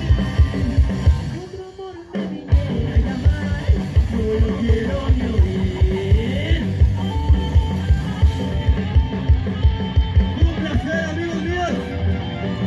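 Live rock band playing loud and amplified: a driving drum kit, electric guitars and bass, with a singer's voice over them. The band drops out for about a second near the start, then comes back in at full volume.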